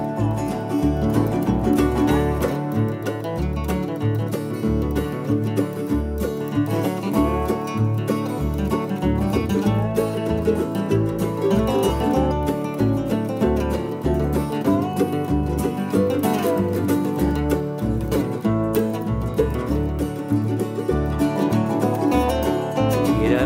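Bluegrass string band playing an instrumental break between verses: picked acoustic strings carry the lead over a steady pulse of bass notes.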